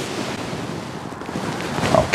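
A steady rushing hiss, like wind, with no distinct knocks or tones.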